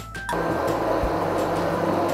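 Immersion blender switched on about a third of a second in and running steadily in a jug of thick pumpkin soup, blending in added liquid to thin it. Background music underneath.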